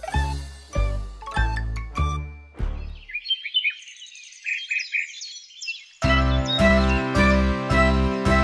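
Children's song music: plucked notes over a deep bass, breaking off about three seconds in for a few seconds of high twittering chirps and tinkles. The full band comes back with a steady beat about six seconds in.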